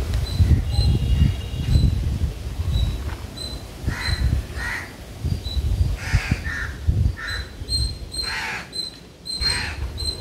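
Crows cawing, a string of separate harsh caws starting about four seconds in, over a low, uneven rumble.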